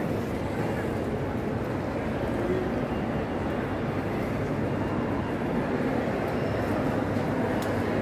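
Airport terminal hall ambience: a steady low rumble with indistinct voices of people nearby.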